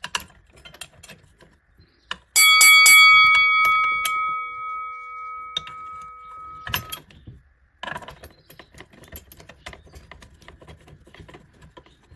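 A metal part knocks a few times in quick succession and rings with a clear metallic tone that dies away over about four seconds. Light clicks and rattles of metal and plastic parts being handled and fitted follow.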